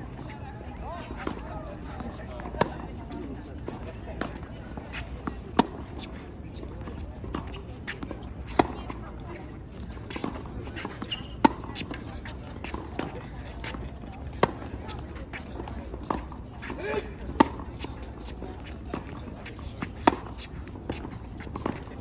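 Tennis ball being hit back and forth in a baseline rally: the near player's racket strikes it with a loud, sharp pop about every three seconds, with fainter hits from the far end and ball bounces in between.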